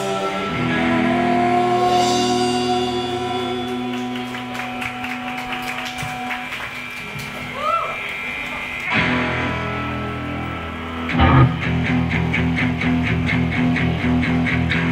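Live indie pop band playing an instrumental passage: electric guitar, bass and keyboard hold sustained chords. About eleven seconds in, a loud hit brings in a steady driving beat.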